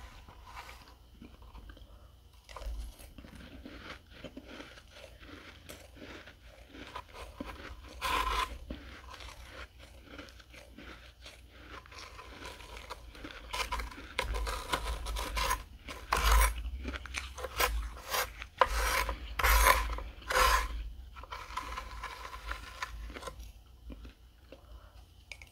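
Metal spoon scraping and scooping through a tray of dry, flaky freezer frost: a crunchy rasping made of many short strokes, loudest in a cluster of strokes in the second half.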